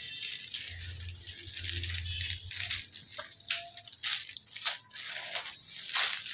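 Plastic bags and small packets of fishing tackle rustling, crinkling and rattling as they are handled, with irregular clicks and crackles.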